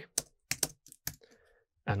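Typing on a computer keyboard: a handful of separate keystrokes, then a short pause.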